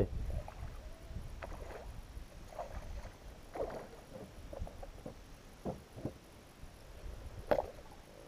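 Hobie fishing kayak on the water: a low steady rumble with a few light knocks and clicks scattered through, the sharpest near the end.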